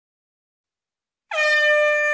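Silence, then a little over a second in, a single steady, horn-like tone with many overtones starts and is held. It is a cartoon air-horn honk or a sustained brass-like synth note leading into the next song.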